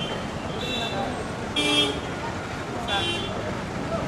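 Street traffic running in the background, with several short vehicle horn toots: one about half a second in, a louder one about a second and a half in, and another about three seconds in.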